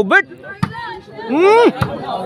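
Volleyball struck by bare hands during a rally: three sharp slaps over about two seconds, with a drawn-out shout rising and falling between the last two.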